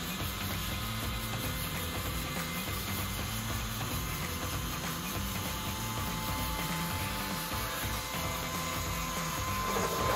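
Steady mechanical hum of a large 3D printer's motors and cooling fans, with a thin steady whine above it, as the print head is moved over the bed during leveling.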